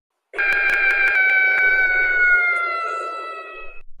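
A long cartoon scream sound effect, held for about three and a half seconds, its pitch slowly falling, with a few clicks in its first second or so.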